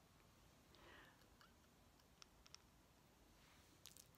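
Near silence, with a faint rustle and a few faint clicks: an upper denture plate with a soft reline lining, worn without adhesive, being pushed up into place in the mouth by hand.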